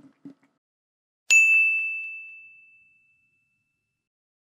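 A single bright bell-like ding, an editing sound effect marking a step as done; it rings out once and fades over about a second and a half.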